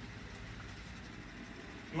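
Faint steady noise, an even low hum with hiss and no distinct strokes or tones.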